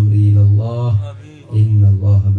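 A man's voice intoning a dua in drawn-out, chant-like syllables held on a steady pitch, with a short break about one and a half seconds in.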